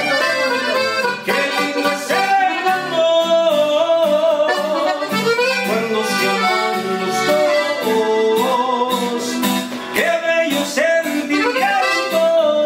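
Norteño music: a diatonic button accordion plays the melody over a strummed acoustic guitar, with no break in the playing.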